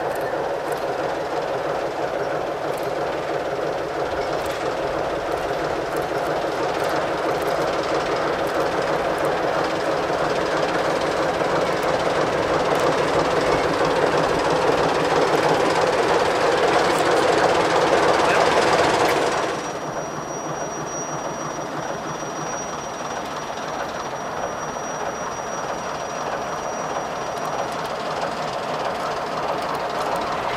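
ČSD class T 435 'Hektor' diesel locomotive running under load as it hauls freight wagons past, its engine sound building steadily louder. About two-thirds of the way through it cuts abruptly to a quieter, more distant engine sound with a thin, steady high tone over it for several seconds.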